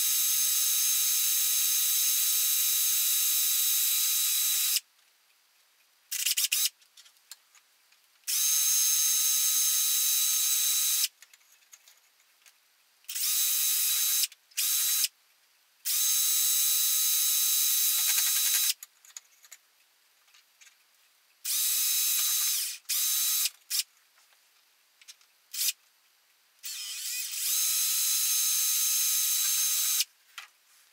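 Electric drill boring holes through a thin wooden plate: the motor runs with a steady whine, starting and stopping again and again in runs of one to four seconds with short pauses between holes.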